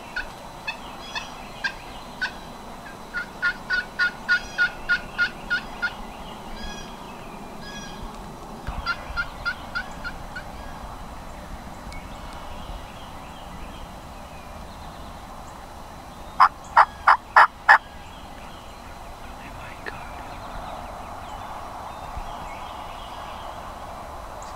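Wild turkey yelping in several runs of short, evenly spaced notes. The loudest is a run of five about two-thirds of the way through.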